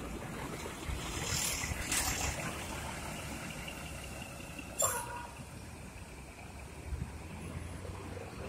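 Coach bus pulling away and driving off: a steady low engine rumble, with short bursts of air hiss about a second in and a short sharp burst about five seconds in.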